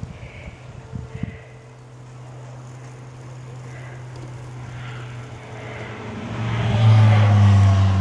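A motor vehicle's engine running with a steady low hum that grows much louder over the last two seconds.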